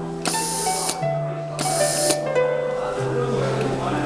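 Two short hisses of compressed air, each about half a second long and about a second apart: the pneumatic lift-and-vacuum gripper of a PLC position-control trainer venting as it is worked. Plucked-string background music plays throughout.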